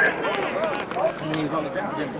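Several indistinct voices of football players on the field, talking and calling out over one another.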